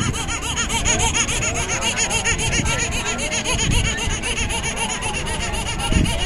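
A loud electronic warbling sound: a fast, even run of quick rising-and-falling chirps over a steady high tone, with crowd chatter underneath.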